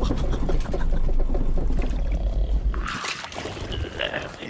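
Cartoon sound effect of a caravan rolling over rough ground: a low rumble with rattling that stops about three seconds in, followed by a brief watery hiss.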